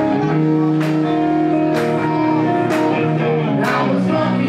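Live rock band playing an instrumental passage: electric guitar and keyboard holding chords, with drum and cymbal hits about once a second.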